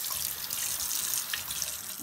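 Bathroom sink faucet running steadily, the stream splashing over a plastic drain-cleaner strip and the hands rinsing it in the basin.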